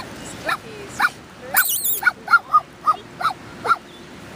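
A dog yipping: a string of short, high barks, quickening to about four a second in the second half, with a brief high, wavering whine about a second and a half in.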